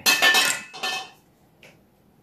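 Clattering handling noise as a bow is picked up from among the archer's other bows and arrows. It is loudest in the first half-second, with a second, smaller rattle just before a second in, then a faint tap.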